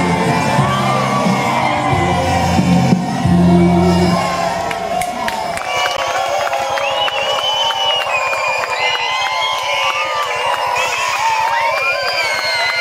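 Music with a heavy bass line plays until about five seconds in. Then a large crowd, many of them children, cheers, whoops and shouts.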